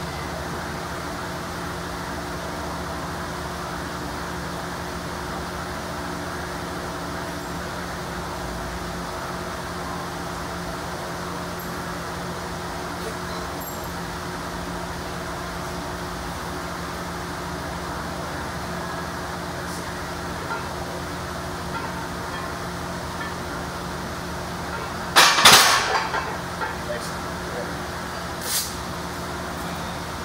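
Steady hum of a floor fan, then about 25 seconds in a loud metallic clank with a short ring as the loaded barbell is racked back onto the power rack's hooks after a bench press set, followed by a smaller clack a few seconds later.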